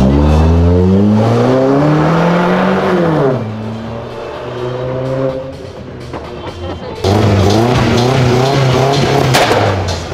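A modified hatchback's engine revving hard as the car pulls away, the pitch climbing for about three seconds and then dropping at a gear change before running on more quietly. After an abrupt cut about seven seconds in, the engine is loud again, its revs rising and falling.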